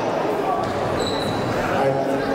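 Voices talking in a large hall, with a few dull knocks.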